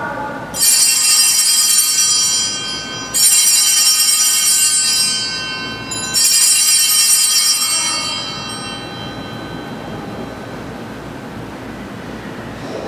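Altar bells rung three times at the elevation of the consecrated host, each ring a bright jangle that fades over a couple of seconds, the last dying away more slowly.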